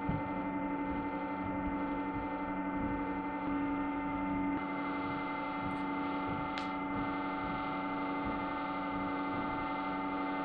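A steady electrical hum made of several held tones, one of them briefly louder near the middle, with a faint tick about six and a half seconds in.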